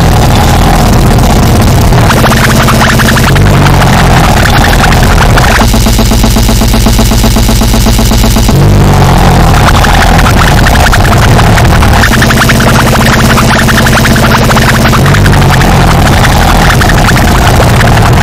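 Goregrind played by a band: heavily distorted guitar and bass over fast drums, a loud, dense, unbroken wall of sound. About six seconds in it switches to a faster, evenly chopped riff for about three seconds, then the first riff returns.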